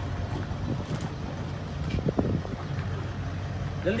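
A vehicle engine idling with a steady low hum, with a faint voice heard briefly about two seconds in.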